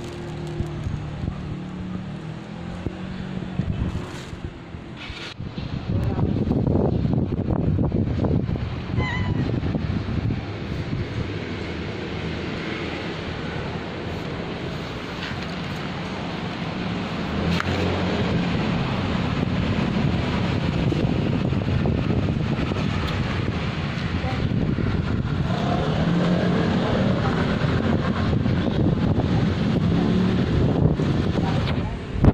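Outdoor street background with wind rumbling on the phone's microphone and traffic noise. The rumble gets louder about six seconds in.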